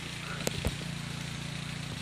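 A steady low hum of an engine or motor running evenly, with two light clicks about half a second in.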